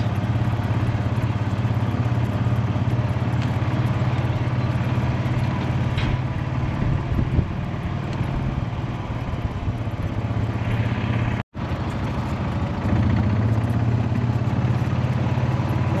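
A motor vehicle's engine running steadily, a low drone with an even pulse. It cuts out for an instant about two-thirds of the way through.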